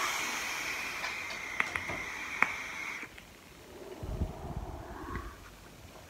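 A long draw on a rebuildable vape mod: a steady airflow hiss with coil sizzle and a couple of sharp crackles, lasting about three seconds. About a second later comes a softer breathy exhale of the vapour.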